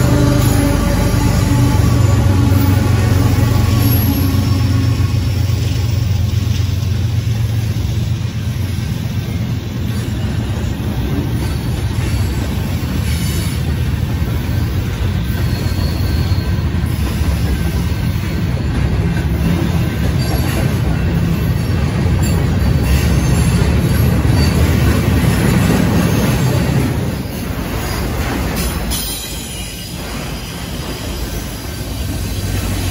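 Freight train passing close by. The diesel locomotives' engines run past in the first few seconds, followed by the steady rumble and rattle of freight cars rolling over the rails. The sound gets quieter a few seconds before the end.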